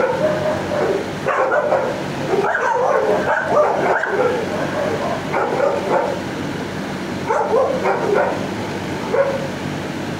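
Dogs barking and yipping in a shelter kennel block, an almost unbroken din of overlapping calls over a steady low hum.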